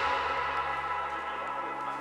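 Background music: held, ringing notes slowly fading out after a louder passage has just stopped.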